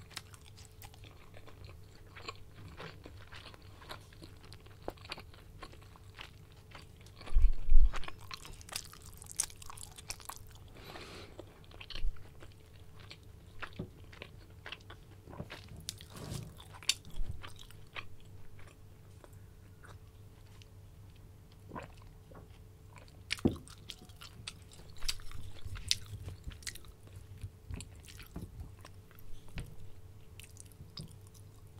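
Close-miked chewing and biting of dim sum dumplings and meatballs, with wet mouth clicks and smacks coming irregularly throughout. A loud thump about seven to eight seconds in is the loudest sound, over a faint steady hum.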